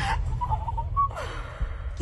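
A young woman crying with gasping, whimpering breaths over a low steady drone.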